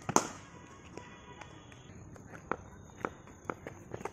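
Cricket net practice with a sidearm ball thrower: one loud sharp crack just after the start, then a few fainter knocks between about two and a half and three and a half seconds in.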